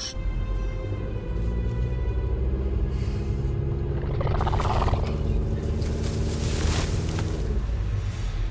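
Suspenseful background music with sustained chords over a low rumble. About four seconds in, a growling dinosaur roar effect rises and then fades out near the end.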